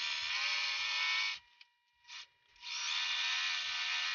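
Singer electric sewing machine running a straight stitch through canvas: a steady motor whine that stops after about a second and a half, gives one short blip, and then starts up again and runs on.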